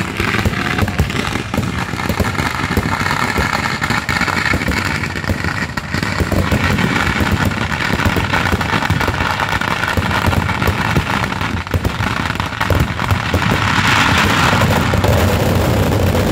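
Kerala temple-festival fireworks (vedikkettu) going off in a dense, continuous barrage of crackling bangs. The barrage grows louder near the end.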